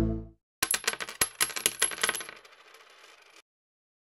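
Background music fading out, then a sound effect: a quick run of light metallic clinks with a thin high ring, dying away by about three and a half seconds.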